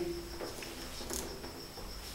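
A steady, high-pitched trill that holds one pitch without a break over faint room hiss.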